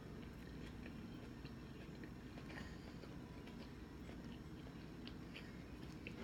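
A person chewing a mouthful of soft rice, chicken and vegetables: faint, scattered small mouth clicks over a low steady hum.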